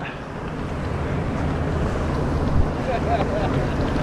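Steady wind on the microphone over choppy sea water lapping against a kayak.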